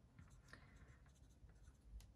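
Near silence with faint scratching of a pencil on a paper notepad.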